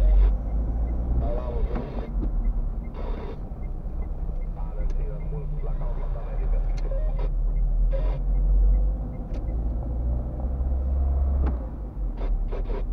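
Car driving through town heard from inside the cabin: a steady low rumble of engine and tyres, with a few short bumps from the road surface.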